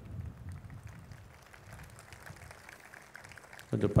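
A pause in a man's talk: only faint low background noise, with his voice starting again near the end.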